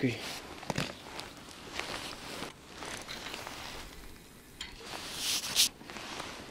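Handling noise from an angler working his tackle: a few small clicks and rustles of clothing and gear, with a short rush of noise, like wind on the microphone or a jacket sleeve brushing it, a little after five seconds in.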